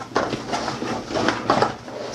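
Stiff, waterproof-coated 400-denier nylon roll-top bag rustling and crinkling in several short bursts as it is handled at its top.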